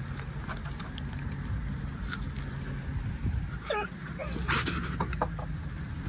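A young woman's short laugh about four seconds in, over a steady low outdoor rumble.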